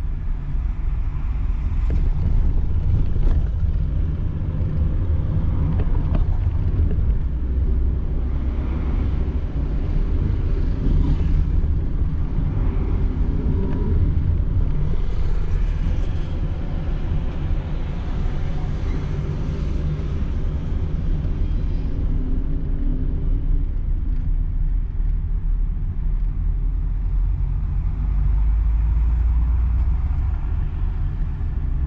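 Car cabin noise while driving: a steady low engine and tyre rumble heard from inside the car.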